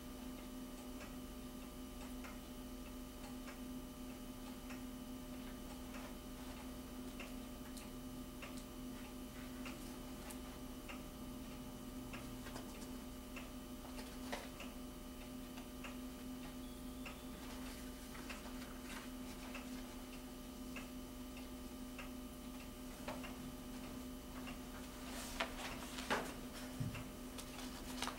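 Faint, fairly regular ticking, about once a second, over a steady electrical hum in a quiet room. Near the end there are a few louder rustles of paper being handled.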